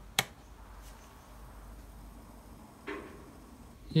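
A single sharp click just after the start: the power supply for the electrolysis cell being switched on. Then quiet room tone with a faint low hum, and a brief soft sound near three seconds in.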